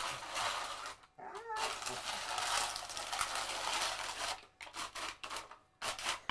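A can scraping and clattering across concrete paving slabs as a standard schnauzer pushes it along with its nose, in two long scraping runs followed by a string of separate knocks near the end. A brief wavering cry comes about a second and a half in.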